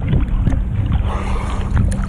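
Ocean swell sloshing and splashing against a camera held at the water's surface, with wind buffeting the microphone.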